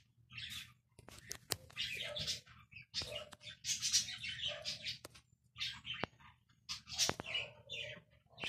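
Cats chewing and smacking wet food in stainless steel bowls: a string of short, wet, high-pitched bursts with sharp clicks of teeth and bowl in between.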